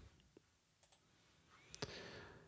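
Near silence, then two quick computer mouse clicks near the end, as the Curves adjustment is confirmed in the photo editor.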